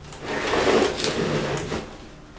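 Large cardboard box being pushed and sliding across a hardwood floor, a scraping rush that lasts about a second and a half.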